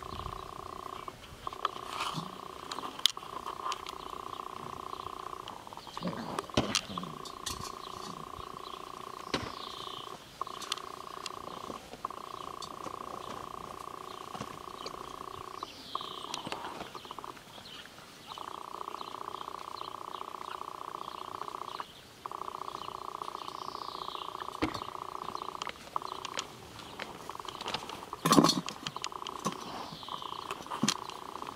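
Saluki puppies growling while play-fighting: long, steady growls of several seconds each, broken by short pauses.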